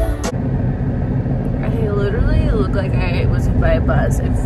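Concert music cuts off abruptly, giving way to the steady low rumble of a moving car heard from inside the cabin. A woman's voice comes in over it about one and a half seconds in.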